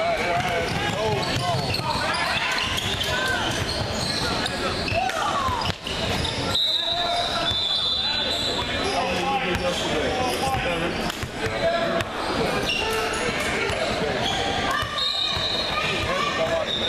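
Basketball game in a gymnasium hall: crowd and players shouting and talking over each other, with a basketball bouncing on the hardwood floor. Shrill high tones sound for a couple of seconds about six and a half seconds in, and again near the end.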